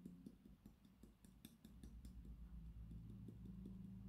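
Near silence with faint, scattered clicks and light handling noise from a shaker bottle of hair-building fibres being shaken over the scalp while fingers work through the hair, over a low steady hum.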